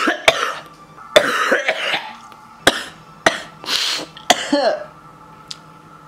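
A man coughing in a fit of about six harsh coughs, some short and some drawn out, over about five seconds: he is ill.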